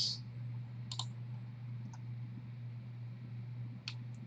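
Computer mouse clicking: two sharp clicks about three seconds apart, with a fainter one between, over a steady low electrical hum.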